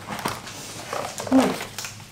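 A child's brief, quiet vocal sounds, short murmurs rather than words, with a sharp click of handling early on.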